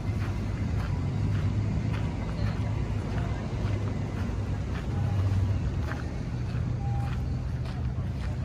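A steady low motor drone, like an engine heard at a distance, with faint light clicks scattered over it.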